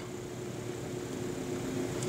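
Steady room tone: a soft, even hiss with a faint low hum.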